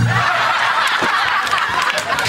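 Several people laughing together in a continuous burst.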